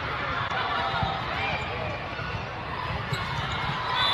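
Volleyball gym ambience: overlapping voices over a steady low rumble, with ball thuds and a few short squeaks.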